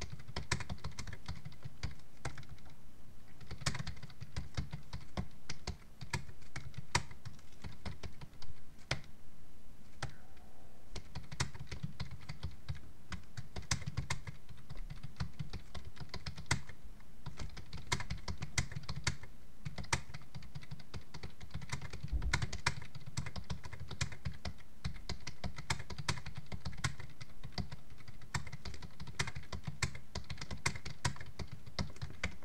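Typing on a computer keyboard: runs of quick, irregular key clicks broken by short pauses.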